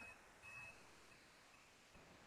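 Near silence: faint room tone, with a faint brief high tone about half a second in.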